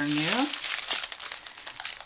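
Thin plastic bags of diamond-painting drills, joined in strips, crinkling and rustling as they are handled and shifted. The crinkling is busiest in the first half second and thins out toward the end.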